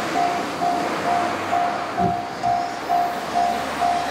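Japanese level-crossing alarm bell ringing in a steady repeating clang, about two strikes a second, warning that a train is approaching.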